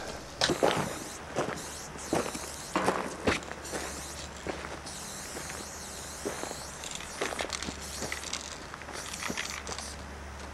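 Footsteps crunching on gravel, irregular and most frequent in the first few seconds, over a faint steady low hum.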